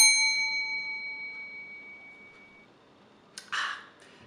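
A small bell's ding, struck just before and fading out over about two and a half seconds. A short breathy sound comes near the end.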